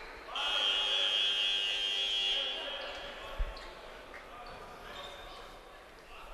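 Arena scoreboard horn sounding once, a steady buzz of about two seconds that rings on briefly in the hall as it stops, signalling a substitution. A single thump, a basketball bounce, comes about three and a half seconds in.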